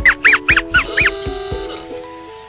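Background music with a quick run of about six short, high, honk-like squeaks rising and falling in pitch during the first second: a cartoon sound effect.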